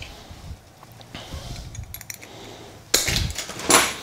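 Handling noises of bonsai wire and tools being picked up from a worktable, soft and scattered at first, with two short louder rustles near the end.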